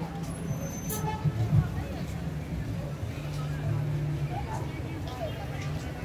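Street traffic: a bus engine running low and steady close by, with a sharp click about a second in. Passers-by talk in the background.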